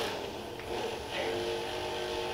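A competition robot's electric motors whining with a steady hum that sets in about a second in.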